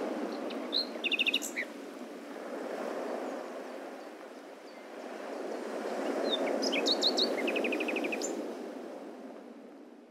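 Birds chirping in two short bouts of quick high notes and rapid trills, about a second in and again around seven seconds, over a steady hiss that fades out near the end.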